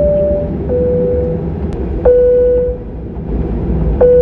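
Airliner cabin chimes over the steady drone of the aircraft: a high-then-low two-note chime at the start, then a single lower chime about two seconds in and another at the end.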